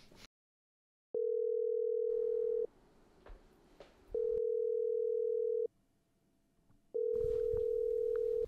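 Telephone ringback tone from a mobile phone while a call rings out. Three long, even beeps of about a second and a half each, separated by silences of about the same length.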